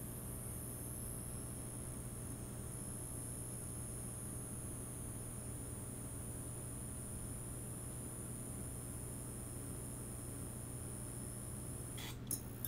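Steady electrical buzz of a neon sign: a low mains hum under a high hiss, unchanging throughout.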